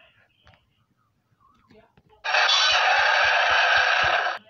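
Faint scattered handling noises, then about two seconds in a loud, steady hissing rush starts abruptly, holds for about two seconds and cuts off suddenly, with a few low thuds beneath it.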